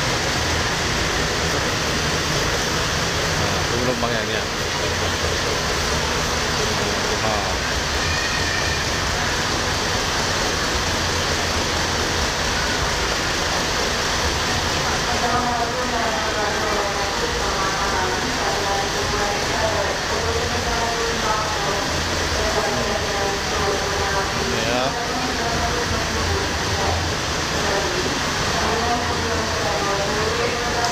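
Steady low rumble of idling bus engines, with people talking in the background from about halfway through.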